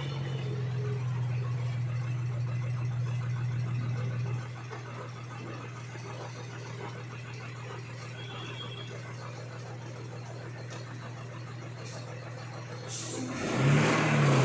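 Ten-wheel lorry's engine running slowly under a heavy timber load as it crawls around a hairpin bend. It steady-hums, eases to a lower level about four seconds in, then revs up louder near the end.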